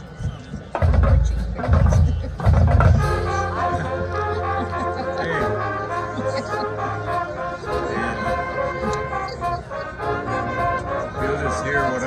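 Marching band starting a song: three heavy drum hits in the first few seconds, then the brass playing long held chords over a sustained low bass line.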